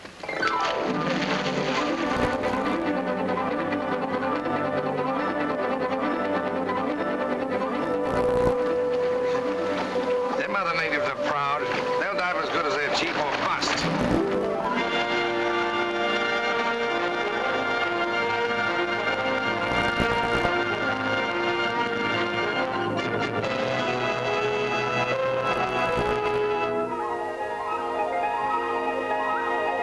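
Orchestral film score starting suddenly at full strength, with a wavering passage partway through and then a change to a new, steadier section about halfway.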